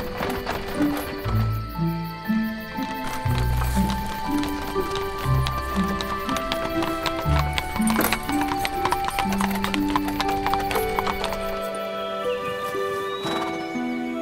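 A horse's hooves clip-clopping steadily at a walk as it draws a wooden wagon, over background music.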